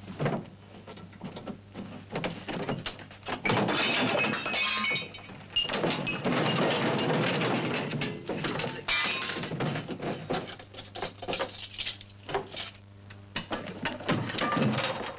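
A room being ransacked: a quick string of knocks, thuds and clattering as drawers and a sideboard cupboard are rummaged and things are knocked about, densest for several seconds in the middle. An old film soundtrack's steady mains hum runs underneath.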